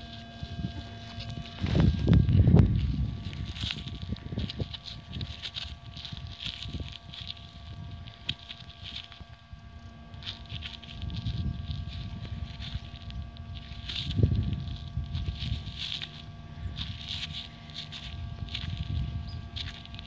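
Gloved fingers scraping soil and rubbing dirt off a freshly dug coin: a run of soft scratchy rustles, with louder low bumps of handling or wind on the microphone about two seconds in and again around fourteen seconds.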